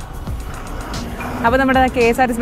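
A motor scooter passing close by on the road, its engine and tyre noise a steady haze for about the first second. A woman's voice then takes over.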